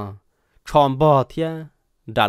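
Speech only: a man narrating a folk tale in Hmong, a phrase ending just after the start and another from about half a second in to near the end.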